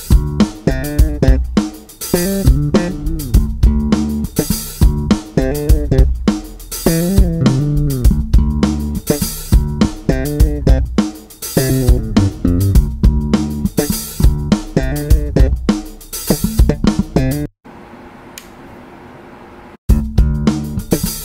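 Lakland 55-94 Deluxe five-string electric bass played slap-style through an amp with all pickups on: thumbed low notes and sharp popped notes in a busy funk line. The playing stops about two and a half seconds before the end, leaving a low amp hum.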